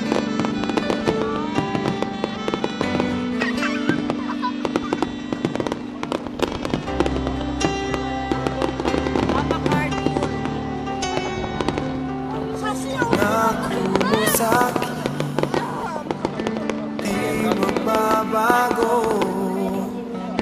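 Music with long held notes plays over the many sharp bangs and crackles of an aerial fireworks display.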